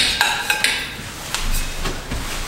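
Metal air-cleaner canister on an old two-stroke golf-cart engine being gripped and worked by hand: a handful of sharp metallic clinks and scrapes, some with a brief ring, mostly in the first second.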